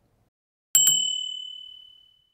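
A bicycle bell struck once with a quick double hit, then ringing out on one clear high tone that fades away over about a second and a half.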